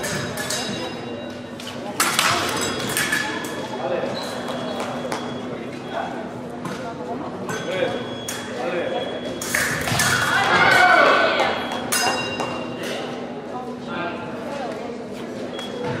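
Busy fencing-hall ambience: voices echoing in a large hall over a steady low hum, with short high electronic tones from the fencing scoring apparatus sounding several times. There is a sudden loud burst about two seconds in, and a loud voice about ten seconds in.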